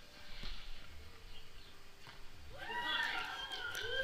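Quiet outdoor air noise, then from near the middle a person's drawn-out exclamation that rises and holds, a reaction shout as the stacked balls are dropped and the golf ball flies up.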